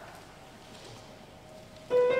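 A quiet pause of faint room noise in a large hall, then, near the end, a keyboard strikes up with a sustained chord to begin a piece of music.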